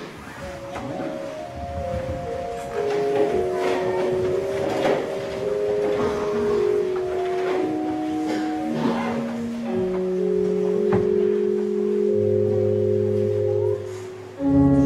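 Church organ playing a slow melody in soft, sustained notes, with deeper bass notes joining about ten seconds in.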